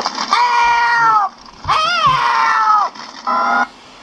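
An elderly woman's voice gives two long, shrill, wavering cries, the second rising then falling, and then a short third cry. The voice comes from a cartoon soundtrack played off an audio cassette through the small built-in speaker of a Wintech SCT-R225 radio cassette recorder.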